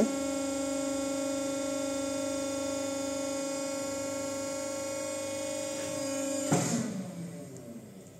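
Hydraulic pump motor of a cold press running with a steady hum as the platen closes and builds pressure. About six and a half seconds in, the hum stops, as the pump shuts off on reaching the set pressure, followed by a brief noise.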